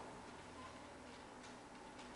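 Near silence: the room tone of a hall, with a few faint ticks.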